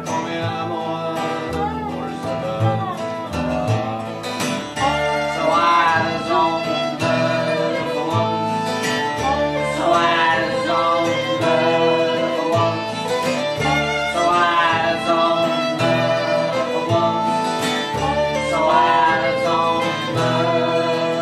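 Acoustic string band playing a waltz instrumental: the fiddle is prominent over acoustic guitar, dobro and upright bass, with sliding, wavering melody lines over a steady bass.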